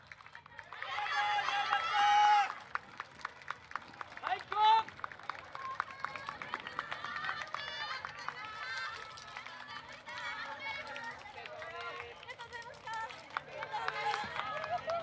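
Yosakoi dancers' voices: several shout out together for about two seconds near the start, then a single call, then scattered calls and chatter with many sharp claps and footsteps as the group moves past.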